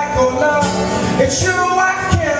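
A man singing a held, gliding melody over a steadily strummed acoustic guitar.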